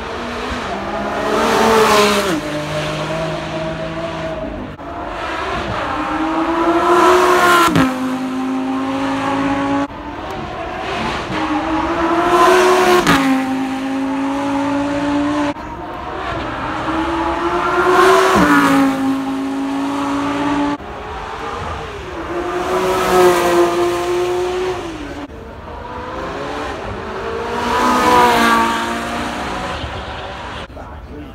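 High-performance supercar engines accelerating hard on a hill climb course. The engines rev up in rising pitch and drop sharply at each upshift, with a new loud swell about every five seconds as one car after another goes by.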